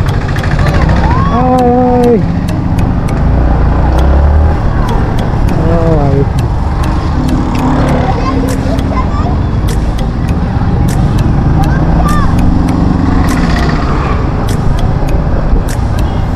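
Steady wind rush and engine rumble of a motorcycle riding in traffic, buffeting the microphone. Short voices call out a few times: about a second in, around six seconds, and around twelve seconds.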